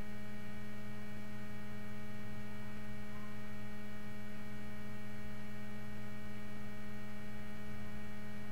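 Steady electrical hum, a low, even drone with several steady tones that does not change.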